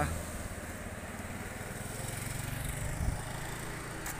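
Small vehicle engine running steadily at low speed, with road noise and a brief knock about three seconds in.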